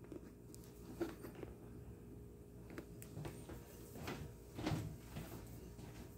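A few faint, short knocks and rustles of handling, the loudest near the end, over a steady low room hum.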